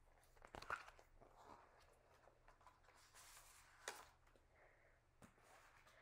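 Near silence, with a few faint rustles and light taps from a picture book being handled, the loudest about half a second in and just before four seconds in.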